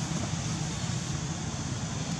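Steady low background rumble with a faint hiss, even throughout, with no distinct event standing out.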